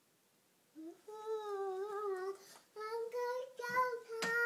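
Toddler boy singing long wordless notes: after about a second of quiet, two held, wavering notes with a short break between them, then another starting near the end. A brief thump comes near the end.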